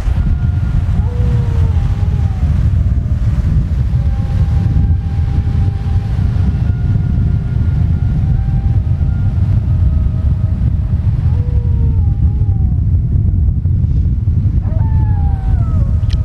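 Strong wind buffeting the microphone as a steady low rumble, with sea surf beneath it. Faint wavering tones come and go in the background.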